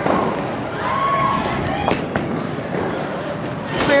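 Bowling alley noise: a ball rolling down the lane and pins clattering, with background chatter.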